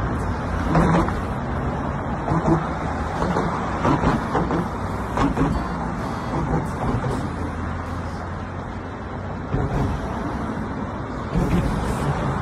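Steady road traffic noise from cars and larger vehicles passing close by on a busy bridge roadway.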